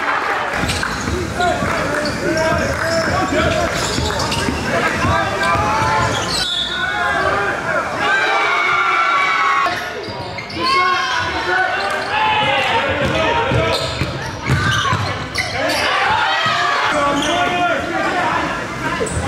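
Live basketball game sound on a hardwood gym court: the ball bouncing as it is dribbled, sneakers squeaking in short high glides, and voices of players and onlookers.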